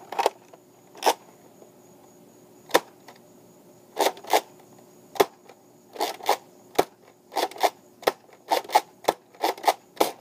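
A Nerf Fortnite BASR-L bolt-action dart blaster being cycled and fired repeatedly: a series of sharp plastic clicks and snaps as the bolt is racked and the trigger pulled. The clicks are sparse at first and come faster, often in close pairs, in the second half.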